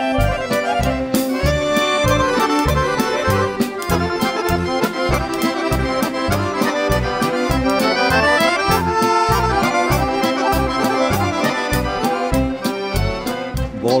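Instrumental break in a Serbian folk song: several accordions play the melody together over a steady beat from the rhythm section, drum kit included.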